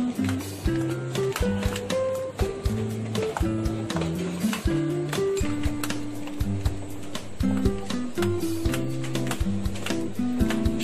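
Background music: a track with a stepping bass line, a melody of held notes and a steady beat.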